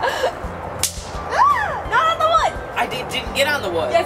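A thrown snap pop bursting with a single sharp crack on concrete about a second in, followed by several short high-pitched yelps from a person.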